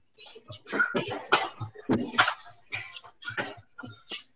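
A person breathing hard while exercising: a quick, irregular run of forceful exhalations, two to three a second.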